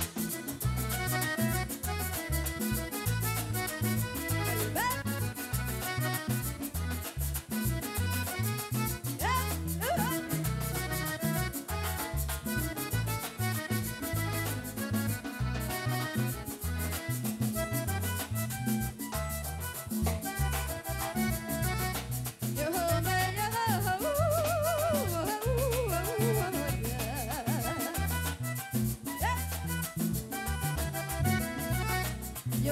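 Live accordion-led band music: a button accordion plays the melody over bass guitar and percussion with a steady, driving beat.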